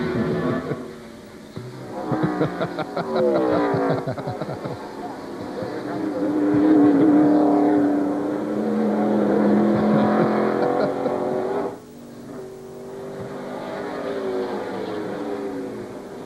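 NASCAR Winston Cup stock car V8 engines racing on a road course. The revs rise and fall with gear changes, the pitch drops as a car goes by a few seconds in, and the sound cuts off sharply about twelve seconds in before building again.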